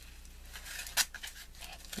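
Small plastic zip bags of square diamond-painting drills rustling and crinkling as they are handled and set down on a table, with one sharp crackle about a second in.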